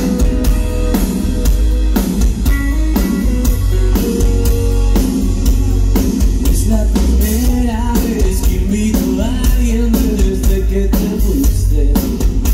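Live rock band playing: electric guitars, bass and a drum kit keeping a steady beat. A male lead vocal comes in a little past halfway.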